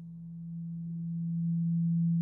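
A steady low hum from a wire-wound choke coil driven with alternating current from a two-battery oscillator circuit. It grows louder as a magnet is held against the coil, a sign the circuit is oscillating.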